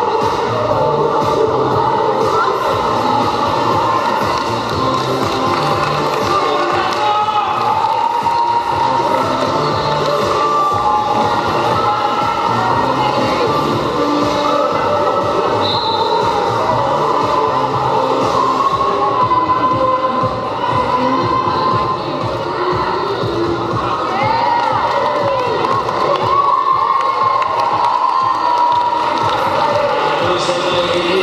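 A crowd cheering and shouting in a large sports hall, many voices overlapping, with music playing underneath.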